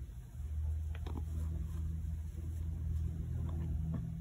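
A low, steady rumble that sets in just after the start, with a couple of faint clicks about a second in.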